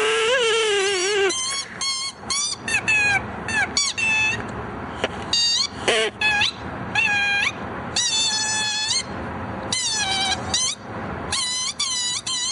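A rapid run of short, high-pitched squeaks with bending, sliding pitch, coming in quick groups, with a wavering lower tone in the first second.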